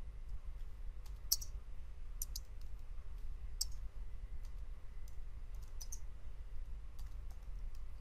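Computer keyboard keys clicking in scattered, irregular strokes and short runs as code is typed, over a low steady hum.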